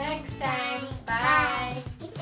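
Background music with a voice singing two long, wavering notes, the second louder than the first.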